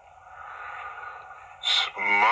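A pause in a man's speech with a faint steady hiss, then a short breath drawn in near the end, just before he speaks again.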